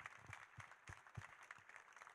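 Near silence between speakers, with a few faint, irregular taps.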